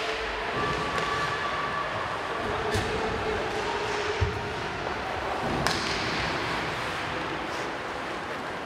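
Live ice hockey play in a near-empty rink: steady rink noise broken by a few sharp clacks of stick and puck and a dull thud about four seconds in.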